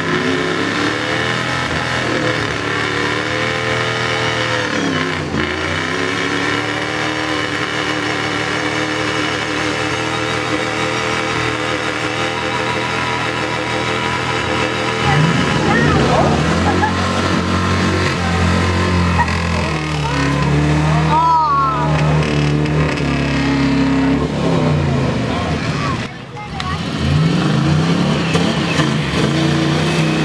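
Mud-bog truck engines revving hard through a mud pit, the pitch rising and falling. The revs dip about five seconds in. About halfway through, a second, louder truck engine takes over and keeps revving, with a brief drop shortly before the end.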